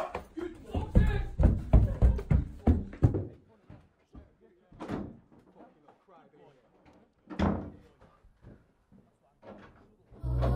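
A run of heavy thuds and bangs for about three seconds as something is forced off, then a few isolated knocks, the loudest with a short ring about seven seconds in.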